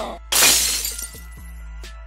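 Glass-shattering sound effect about a third of a second in, fading away over about a second, over a steady background music bed.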